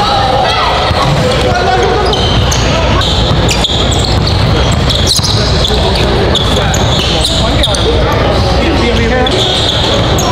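Live basketball game sound in a large gym: the ball bouncing on the hardwood court in sharp knocks, with voices of players and spectators echoing through the hall.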